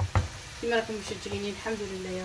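Wooden spoon stirring rice in a large aluminium pot of boiling water, with one sharp knock of the spoon against the pot near the start over a steady bubbling hiss.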